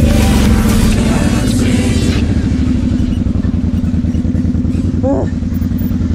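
Kawasaki KFX 700 V-Force quad's V-twin engine running with wind and track rush for the first two seconds. The rush then drops away, leaving the engine's steady low pulsing. A singing voice from background music comes in near the end.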